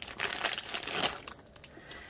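Clear plastic wrap crinkling as it is pulled off a small foil cup of wax melt, for about the first second, then dying down.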